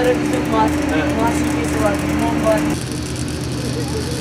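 People talking over a steady low background hum and a held tone, which cut off abruptly about three quarters of the way through, leaving quieter background noise.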